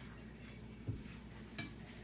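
Spoon stirring chopped bologna and mayonnaise in a bowl: soft stirring with a dull knock about a second in and a light clink a little after.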